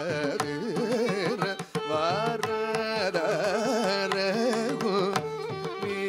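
Live Carnatic music in raga Mayamalavagowla. A male vocalist sings with wavering, heavily ornamented pitch (gamakas), accompanied by mrudangam strokes and a violin following the melody.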